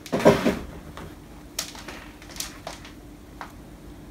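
Handling noise: a brief rustling knock at the start, then a few light, separate clicks as small pieces of twisted copper wire are picked up and handled.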